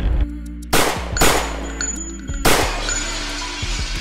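Two gunshot sound effects, about two seconds apart, each dying away, over background music with held notes.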